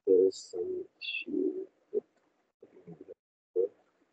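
A man's voice over a failing video-call connection, broken into short garbled fragments with no intelligible words, with two brief high chirps in the first second and a half. The choppiness comes from the internet connection dropping.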